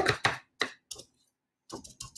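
A few light taps and clicks in the first second from painting supplies being handled as more magenta paint is picked up and sponged on.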